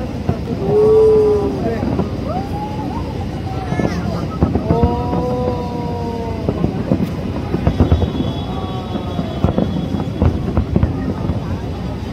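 Aerial fireworks bursting and crackling in quick succession over a steady rumble. Several long held tones, each a second or two and bending slightly in pitch, sound over the bangs.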